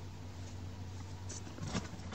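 Quiet room tone with a steady low hum, and a few faint soft ticks and rustles of a hand handling a potted chili plant's stem in the second half.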